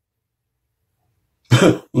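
Near silence for about a second and a half, then a man's voice starts near the end.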